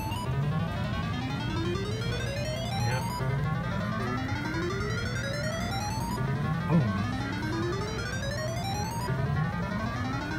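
Video poker machine counting up a four-of-a-kind payout: a run of electronic tones climbing in steps, repeated over and over as the credits tally.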